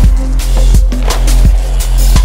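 Electronic instrumental music: a deep sustained bass and held synth tones under a steady, fast drum beat of about three strikes a second.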